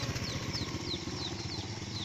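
Small Yamaha step-through motorcycle's single-cylinder engine running steadily as the bike rides off along a dirt track, fading a little as it moves away.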